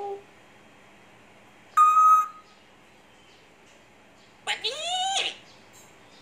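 African grey parrot calling: a short, loud whistled note about two seconds in, then a longer speech-like mimicking call whose pitch rises and falls, a little before the end.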